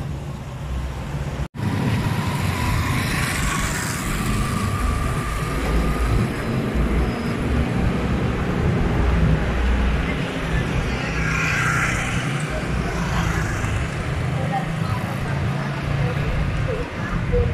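Street traffic: cars and motorcycles going past in a steady wash of road noise, with a heavy low rumble throughout. The sound drops out for an instant about a second and a half in.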